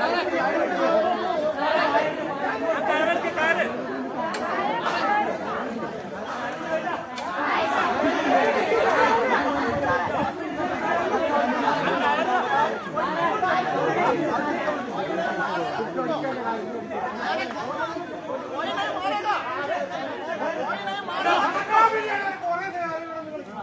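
A crowd of onlookers talking and calling out over one another in a continuous hubbub of voices.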